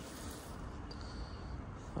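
Faint steady background noise with a low rumble, with a brief faint high-pitched tone around the middle.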